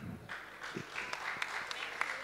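Audience applause: a few scattered claps that thicken into steady clapping from about a second in.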